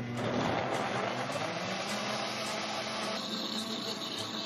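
Nutribullet countertop blender running steadily, its motor and blades blending chopped green bananas with coconut milk into a thick liquid. The tone shifts a little over three seconds in.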